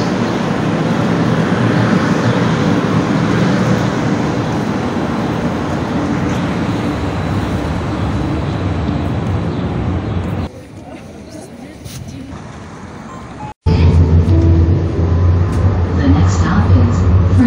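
Calgary Transit CTrain light-rail train running past along the platform: a loud, steady rumble of wheels and motors that drops away after about ten seconds. After an abrupt break, a louder low, steady drone of a moving train.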